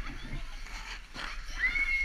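A child's high-pitched squeal starting about one and a half seconds in, rising quickly and then held, over the scrape of ice skates on the rink.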